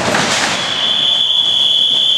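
A wrestler's body slamming onto the ring mat at the start, then about half a second in a loud, steady high-pitched whistle that holds without wavering.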